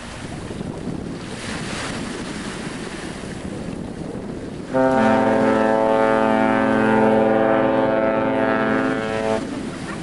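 Wind buffeting the microphone over open water, then about halfway through a cruise ship's horn sounds one long, steady blast of about four and a half seconds before cutting off.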